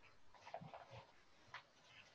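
Faint graphite pencil strokes scratching on drawing paper: a quick run of short strokes in the first half, then one more a little later.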